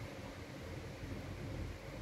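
Steady low background hiss with no distinct sound events: room tone.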